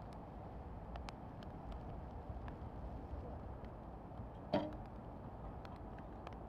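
An Olympic recurve bow is shot: one sharp snap with a brief ring, about four and a half seconds in, over a faint steady outdoor background.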